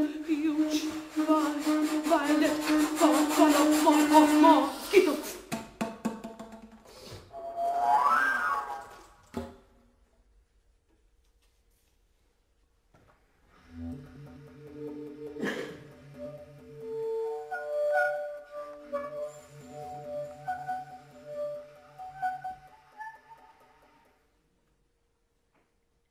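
Contemporary chamber music for bass flute, bass clarinet and female voice. A held low note with wavering, fluttering sounds above it gives way to a rising glide. After a pause of a few seconds of near silence, a low pulsing tone returns under long held higher notes, with one sharp click partway through.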